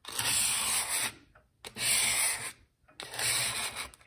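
150-grit sandpaper rubbed over a brass clock dial in three strokes, each about a second long with short pauses between, putting a straight grain on the metal before silvering.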